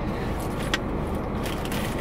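Steady low noise of a car cabin with the engine running, with a few light clicks and taps around the middle.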